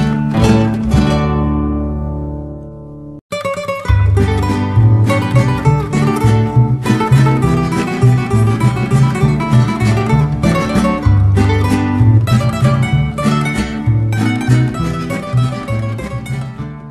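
Instrumental Mexican acoustic guitar music. A chord rings and fades over the first three seconds, the track cuts out briefly, then a fast picked melody over bass notes starts up and carries on.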